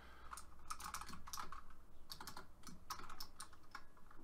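Typing on a computer keyboard: an uneven run of keystroke clicks as a line of code is entered.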